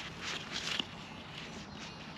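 Faint scraping and crumbling of ploughed soil being dug and broken apart by hand to recover a metal detector target.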